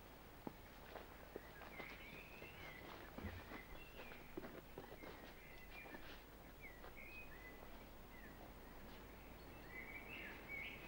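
Faint birdsong: short chirping notes repeated throughout, with a few scattered light clicks and knocks.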